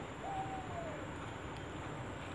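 A single hooting call about a quarter second in: one clear note that holds briefly and then falls in pitch over well under a second, over a steady background hiss.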